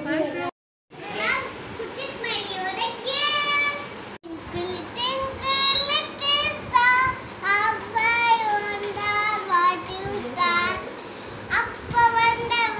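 A young girl talking in a high voice, some words drawn out, after a brief dropout to silence about half a second in.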